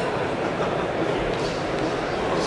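Arena crowd noise: a steady, dense murmur of many voices.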